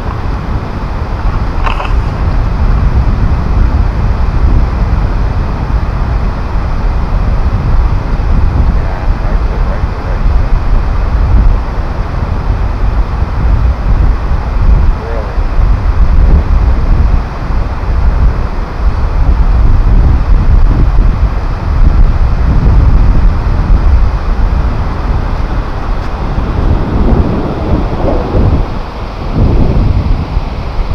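Wind buffeting a GoPro's microphone: a loud, gusting low rumble that rises and falls throughout.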